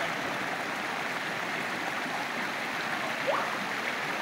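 Shallow rocky stream rushing steadily over and between boulders, a continuous even water noise.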